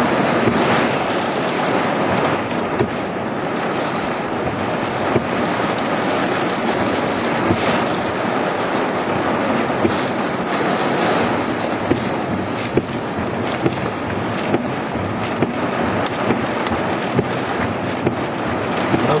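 Heavy thunderstorm rain driven by wind, heard from inside a vehicle: a steady loud rushing hiss with many scattered sharp taps of drops striking the glass and body.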